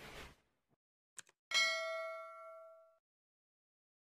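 Subscribe-button animation sound effect: a whoosh fading out at the start, two quick mouse clicks about a second in, then a single bright bell ding that rings out for about a second and a half.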